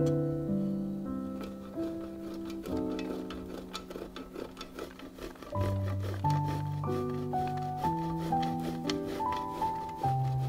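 Instrumental background music with held notes changing every half second or so. Under it, the scraping of a block of Gruyère cheese rubbed in quick repeated strokes over a stainless steel box grater.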